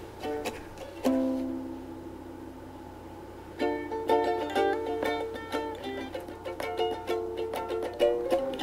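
A plucked string instrument playing alone: a chord struck about a second in rings out and fades, then picked notes and strums start up again about halfway through and carry on.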